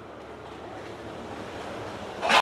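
Steady rushing background noise with no clear tones, slowly growing a little louder.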